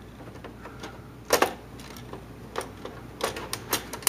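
Replacement lamp module of a Vivitek DLP projector clicking and knocking, plastic on plastic, as it is lowered and seated into the lamp bay: one sharp click about a second in, a lighter one later, then several quick clicks near the end.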